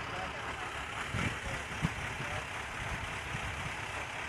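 Steady roadside background of vehicle engine noise, with faint distant voices about a second in.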